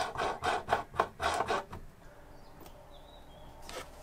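A metal drawer knob being screwed on by hand against the drawer front: a quick run of short scraping strokes, about four a second, that stops about two seconds in. A faint knock comes near the end.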